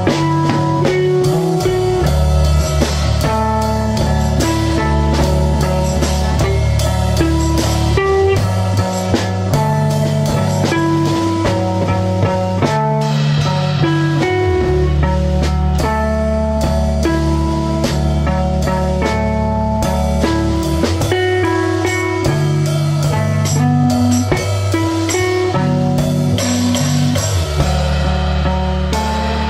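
Live instrumental rock jam: electric guitars played through small amps over sustained low bass notes, with drums and cymbals keeping time. A sleepy, unhurried groove.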